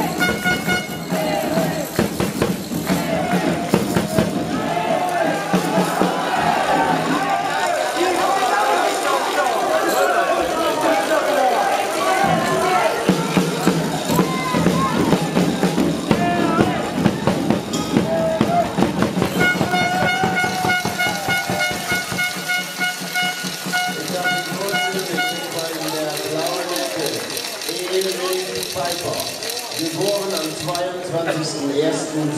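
Crowd in a boxing hall shouting and cheering throughout, with sharp short sounds mixed in. A horn blows briefly at the very start, then one long steady note from about twenty seconds in that lasts about six seconds.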